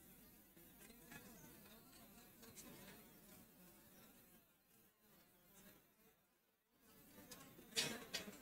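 Near silence: faint room tone, dipping even lower for about two seconds near the middle.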